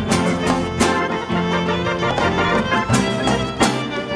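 A live rock band playing an instrumental passage: a violin bows a melody over a drum kit keeping a steady beat and strummed guitars.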